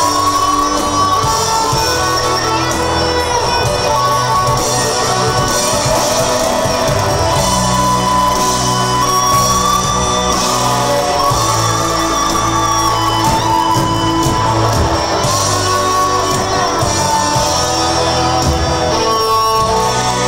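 Live rock band playing, with electric guitars over bass and drums.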